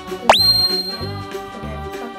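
Upbeat children's background music with a steady repeating bass beat. About a third of a second in, a whistle-like tone slides quickly upward and holds high for nearly a second before cutting off.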